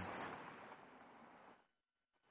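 Highway traffic noise, an even rush of passing cars, fading down and cutting off to silence about a second and a half in.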